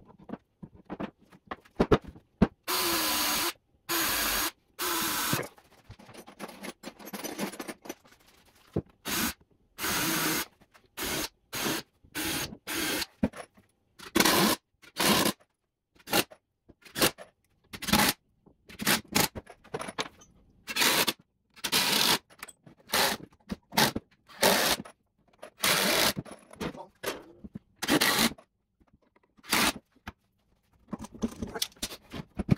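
A cordless drill runs three times for about a second each, a few seconds in, pre-drilling the 2x4 frame for screws. After that come many short scrapes and knocks as tools and bar clamps are handled.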